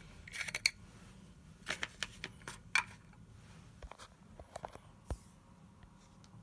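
Plastic caps being handled and fitted onto a metal M42-to-Nikon lens adapter: a few scattered clicks and short scrapes in the first three seconds, then fainter ticks.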